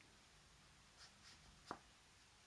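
Near silence, with faint scratchy dabs of a large watercolour brush on textured paper about a second in, then a single short click near the end.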